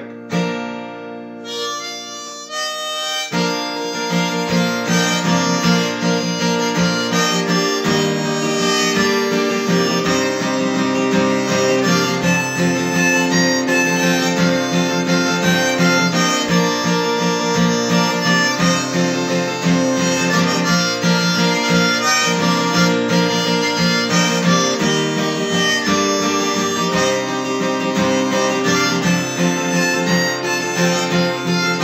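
Acoustic guitar strummed with a harmonica played on a neck rack, an instrumental tune; it fills out and gets a little louder a few seconds in.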